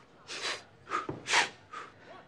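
A man breathing in short, quick, puffing breaths through the mouth, about four in two seconds, the third the loudest. It is deliberate rapid breathing done on instruction as a breathing exercise.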